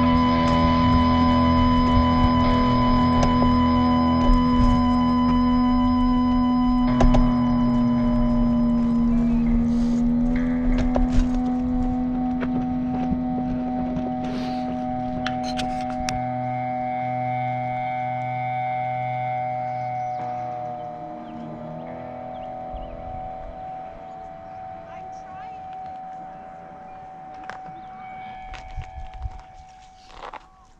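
Background rock music with long held notes that fade out slowly toward the end.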